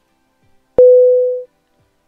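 WeChat video call's hang-up tone as the call is ended: a single loud beep at one steady pitch, starting about a second in and lasting under a second as it fades.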